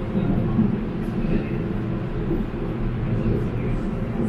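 Gurgaon Rapid Metro train running on elevated track, heard from inside the car: a steady low rumble of the train in motion, with a faint steady hum above it.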